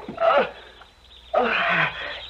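A man's hoarse, strained outcries in two bursts, the second longer and harsher and falling in pitch, as he is struck down with a chair in the radio drama.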